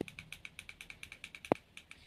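Rapid, even clicking of the push buttons on a ring light's inline cable remote, about nine clicks a second, as the minus button is pressed over and over to dim the light. One sharper click comes about one and a half seconds in.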